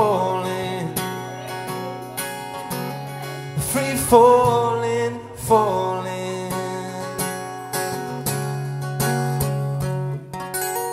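Amplified acoustic guitar strummed with a capo, chords ringing on, with a voice singing drawn-out wordless notes over it a few times.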